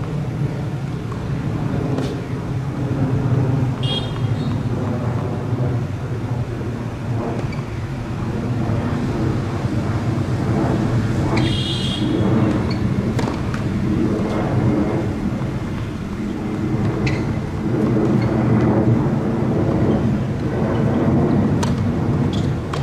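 Steady low rumble of outdoor background noise like road traffic, with two short high chirps about four and eleven seconds in and a few faint scattered knocks.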